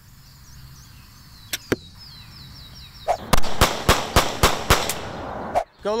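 Faint bird chirps and two small clicks, then a loud rushing noise about halfway through with a quick run of six sharp cracks, roughly four a second, that cuts off suddenly.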